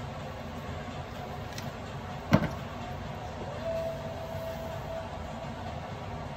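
Steady low background hum in a kitchen, with one sharp knock of kitchenware a little over two seconds in and a faint steady tone for about a second and a half in the second half.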